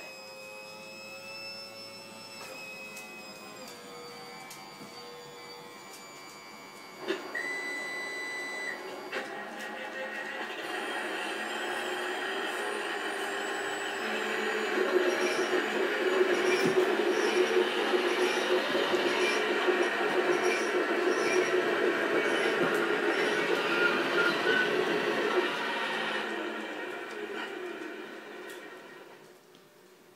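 Hydraulic pump drive of a Wedico Cat 345 RC model excavator running with a steady whine that shifts pitch in steps, with a brief high steady tone about seven seconds in. From about ten seconds in it grows louder and rougher, then dies away near the end.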